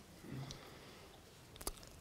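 Near silence: quiet room tone, with a faint brief hum about a third of a second in and a single soft click near the end.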